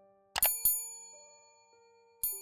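Notification-bell sound effect from a subscribe-button animation: two quick bright dings about a quarter second apart, ringing out, over soft background music.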